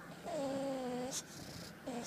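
English bulldog whining through a closed mouth: one long, slightly falling whine about a quarter second in, then a short rising one near the end. It is the whine he uses to get what he wants.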